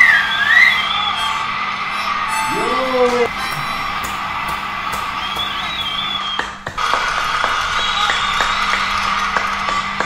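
A loud finger whistle that wavers in pitch, over background music; shorter whistles come again about halfway through and near the end, and a brief rising whoop comes about three seconds in.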